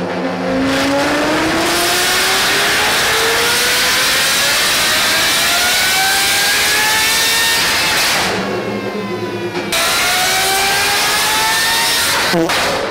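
Naturally aspirated Judd GV4 racing V10 in a Toyota Supra, loaded on a chassis dyno, running a long full-throttle pull with its pitch climbing steadily for about eight seconds. It then drops back as the throttle closes, settles briefly, and climbs again near the end.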